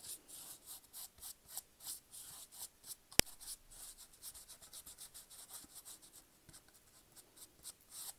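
Sturdy paintbrush dry-brushing white acrylic paint onto a miniature wooden plank floor: a rapid run of short bristle strokes on the wood. A single sharp click about three seconds in.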